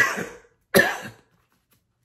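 A man coughing twice, two short coughs a little under a second apart.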